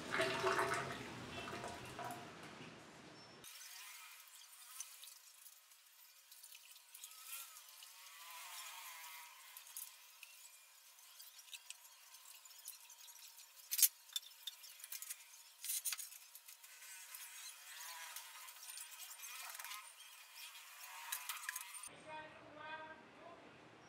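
Watery concrete mix poured from a small can into a rebar-filled wooden form: faint, thin wet sloshing and dripping with scattered small clicks, and one sharp click about fourteen seconds in.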